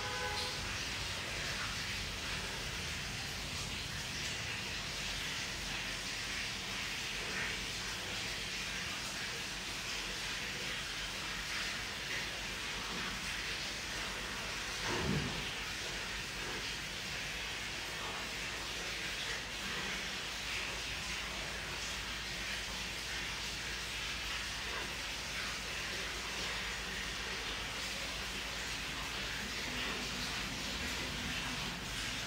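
Steady background hiss, with one brief low sound about halfway through.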